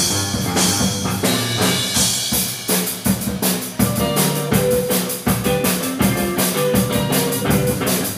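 Live indie rock band playing: guitars over a drum kit, with the drum hits coming thicker and faster from about three seconds in.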